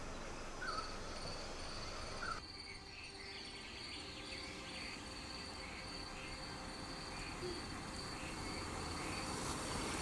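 Insects trilling steadily in a high-pitched, unbroken drone, with a faint car coming closer and getting louder near the end.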